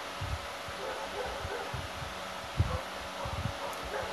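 Steady background hiss of room tone, with a few faint, irregular low thumps.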